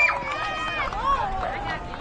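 Several high-pitched girls' voices talking and calling out over one another, just after a long held shout breaks off.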